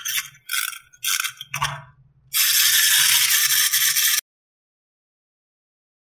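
Plastic wind-up caterpillar toy: four short strokes of its key being wound, then its clockwork motor running with a steady buzzing rattle for about two seconds before cutting off suddenly.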